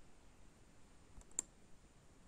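Near silence with one short, faint click about one and a half seconds in.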